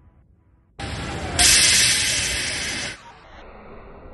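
A loud, steady hiss that starts suddenly about a second in, grows louder, and cuts off sharply at about three seconds, followed by a quieter steady rush of noise.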